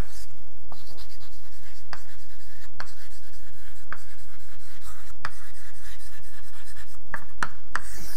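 Chalk writing on a blackboard: scratchy strokes with sharp taps as the chalk strikes the board, three taps in quick succession near the end.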